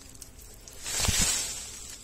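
A rustle of leaves and twigs that swells and fades about a second in, as the branches of a Canary Island strawberry tree are knocked to bring fruit down.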